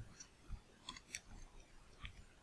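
Faint computer keyboard typing: a few light, scattered keystroke clicks.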